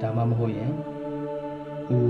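A man's voice in a level, chant-like delivery over faint background music.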